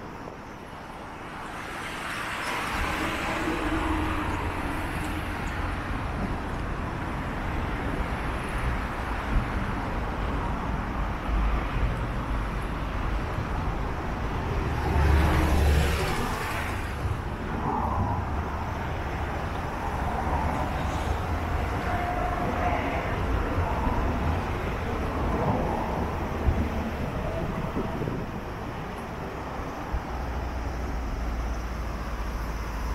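Road traffic on a wide multi-lane road, vehicles passing in a steady stream, with one passing louder about halfway through.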